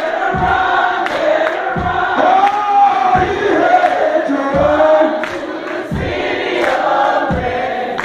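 Gospel choir of men and women singing, sung live in a church, over a steady low beat that falls about every 0.7 seconds.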